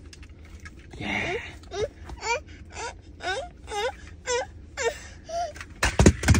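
A toddler whining and whimpering: a string of about nine short, high-pitched cries, each rising and falling, starting about a second in after a brief hiss-like burst.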